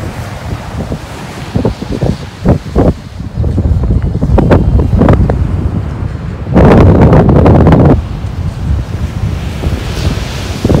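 Strong wind buffeting the microphone in uneven gusts, with the heaviest gust about two-thirds of the way through, over the wash of surf breaking on a sandy beach.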